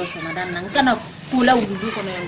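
A woman talking in Malinké in short phrases.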